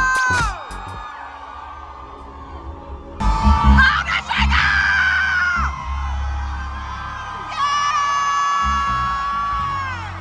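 A concert fan close to the microphone lets out a loud wavering hoot and yell about three seconds in, over deep bass from the venue's music. A long held high note follows near the end.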